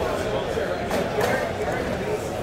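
Background chatter of many distant voices echoing in a large hall, with no single loud event.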